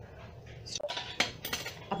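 A large spoon clinking and scraping against an appe pan as batter is spooned into its hollows. There are a few sharp clinks, starting just under a second in, after a quieter start.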